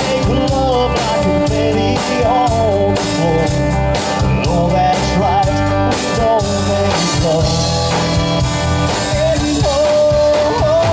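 Live rock band playing at full volume: drum kit keeping a steady beat under bass, electric and acoustic guitars and keyboard, with a melody line that bends in pitch over the top.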